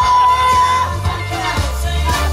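Karaoke music through PA speakers: a pop backing track with a steady bass line and beat, with children singing along into microphones. A long held sung note ends about a second in.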